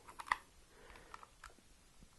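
A few faint clicks and scrapes of a USB cable plug being pushed into the port of a powered USB hub, most of them in the first half-second.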